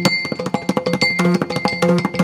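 Yakshagana maddale barrel drum and chende playing a fast, dense run of strokes, with small hand cymbals keeping time over steady held tones.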